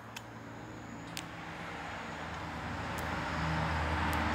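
A road vehicle approaching, its engine and road noise growing steadily louder, with a few faint clicks over it.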